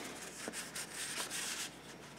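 Faint rustling and scraping of paper: a cardstock card sliding into a paper envelope and the envelope being handled.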